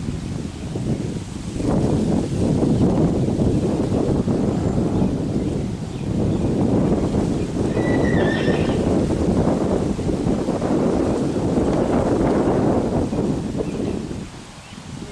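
A horse cantering in a sand arena: a dense run of hoofbeats and horse sounds starts about a second and a half in, eases briefly midway and fades just before the end. A short high-pitched sound comes about eight seconds in.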